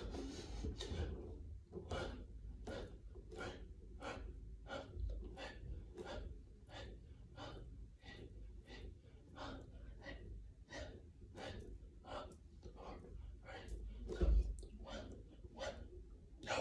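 A man breathing hard in short, sharp breaths, about two a second, in time with a fast set of push-ups. A low thump comes near the end.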